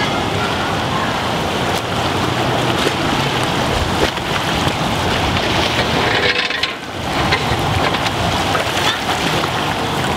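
Steady splashing and sloshing of swimmers doing front crawl in a pool, a continuous rush of churned water.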